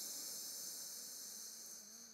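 A soft, long nasal breath drawn in through one nostril while the other is pressed shut, a steady airy hiss that fades gradually: the single-nostril inhale of alternate nostril breathing.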